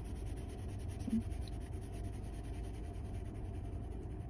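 Graphite pencil shading on sketchbook paper with the side of the tip, a soft, steady scratching of the lead across the paper.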